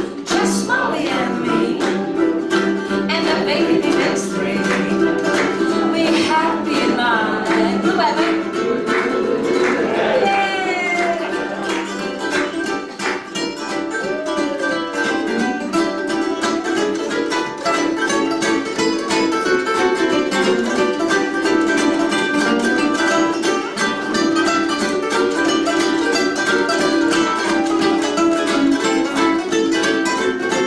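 Two ukuleles playing an instrumental break, strummed and picked. A wavering lead melody rides on top for the first ten seconds or so, after which the plucked strings carry on alone.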